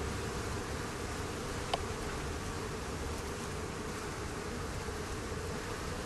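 Honeybees buzzing in a steady hum, with a single short click about two seconds in.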